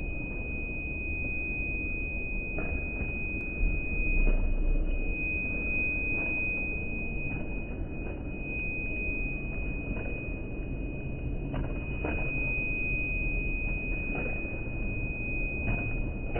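A steady, high-pitched single tone holds throughout over a low background rumble of a large hall. Light, irregular taps of running footsteps on a hard tile floor come through faintly now and then.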